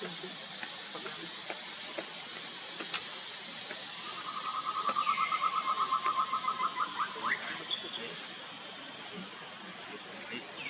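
Steady hiss of insects with a high, even whine. About four seconds in, a rapid pulsing trill starts and lasts about three seconds, with a short falling whistle above it.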